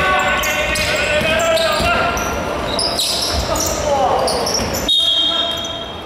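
Basketball bouncing on a wooden gym court, with players' calls and sneaker squeaks echoing in the hall. Near the end, a steady high-pitched referee's whistle.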